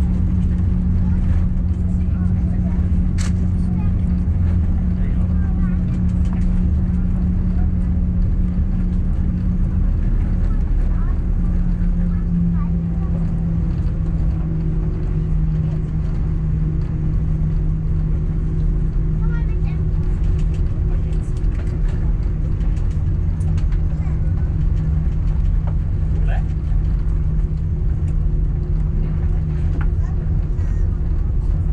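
Airbus A340-300 cabin noise while taxiing: a steady low drone from the four CFM56 engines at idle, with a steady hum that drops slightly in pitch about twelve seconds in.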